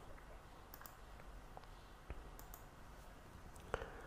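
Quiet room tone with a few faint, scattered clicks, the clearest one shortly before the end.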